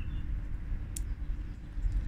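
Steady low background rumble with one sharp click about a second in, from a small plastic loose-pigment jar being handled as it is opened.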